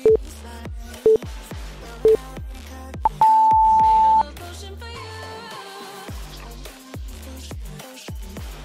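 Workout interval-timer countdown: three short beeps a second apart, then one longer, higher beep marking the start of the next work interval. This plays over electronic background music with a steady beat.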